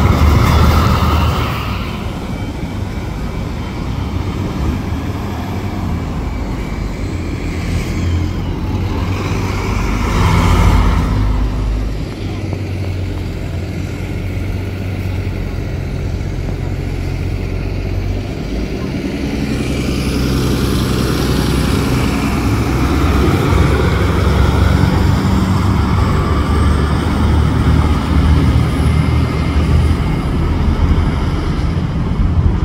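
City transit buses' engines running and pulling away through street traffic, a steady low rumble with the loudest pass about ten seconds in.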